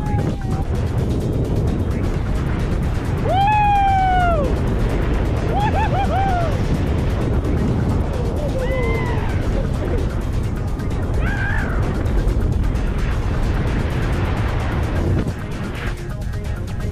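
Wind rushing over the camera microphone under an open parachute, with a person whooping four times, each 'woo' swinging up and then falling in pitch.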